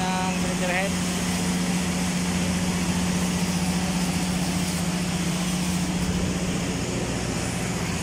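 Steady machinery drone: a constant low hum over an even hiss, unchanging throughout.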